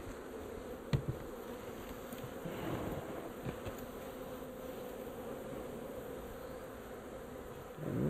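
A swarm of honey bees buzzing as they fly around a hive box being set onto a barrel: a steady hum, with one knock about a second in.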